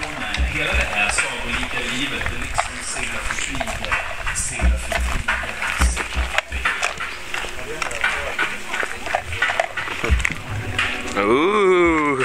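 People talking with music in the background, with low thumps on the microphone. Near the end a voice swoops up and down in pitch.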